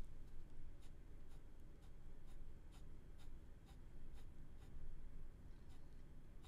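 Ballpoint pen drawing on paper: faint scratching, with a short, sharp tick of the tip about twice a second as it makes quick shading strokes.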